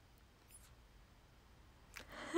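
Near silence: room tone, with one faint, brief, high-pitched squeak about half a second in.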